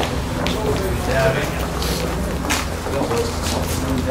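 Indistinct chatter of several people talking at once, no words clear, over a steady low rumble.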